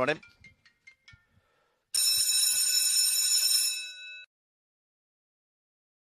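An electric bell rings for about two seconds, starting abruptly about two seconds in and dying away at the end. It is the track's bell, rung as the mechanical hare sets off before the traps open.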